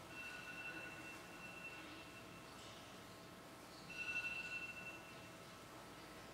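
A faint high ringing tone sounds twice at the same pitch, each time fading away. The second is louder and shorter.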